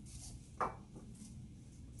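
Quiet kitchen handling sounds: a tablespoon of cornstarch tipped into a bowl of sticky marshmallow dough and hands starting to knead it, with one brief soft sound a little over half a second in.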